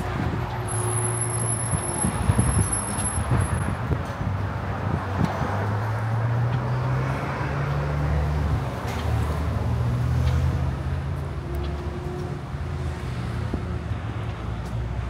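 Street traffic: cars going by with a steady low engine rumble and tyre noise.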